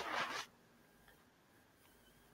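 A brief, faint noisy hiss fades out in the first half second, then near silence.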